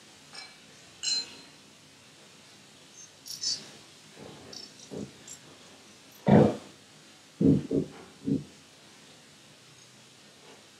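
Altar furnishings being handled and set down during the stripping of the altar: a couple of light clinks in the first seconds, then a cluster of four dull knocks and thumps from about six to eight and a half seconds in.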